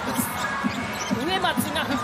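Basketball game sound from a hardwood court: the ball bouncing and sneakers squeaking in short rising and falling chirps as players drive to the basket.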